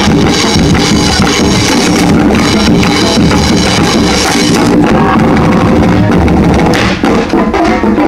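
Drum line and brass band playing live: bass and snare drums keep a driving beat under sustained brass chords from instruments such as sousaphones, with a brief drop in loudness about seven seconds in.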